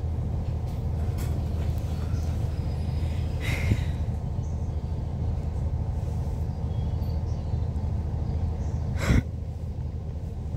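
Steady low drone of an Irish Rail ICR 22000-class diesel railcar heard inside the carriage, from its underfloor diesel engine. A short hiss comes about three and a half seconds in, and a sudden short loud noise near the end.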